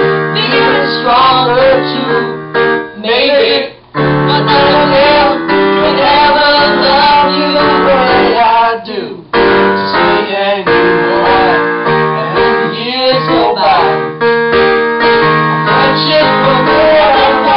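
Electronic keyboard played in chords, piano-style, with a voice singing a melody along with it; the music breaks off briefly twice, about four and nine seconds in.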